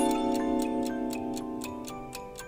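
Quiz sound effects: a sustained chord that slowly fades over a steady clock-like ticking at about four ticks a second.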